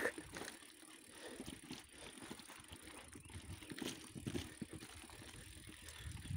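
Mountain bike rolling over a bumpy dirt trail: faint tyre rumble with irregular small knocks and rattles from the bike as it goes over bumps.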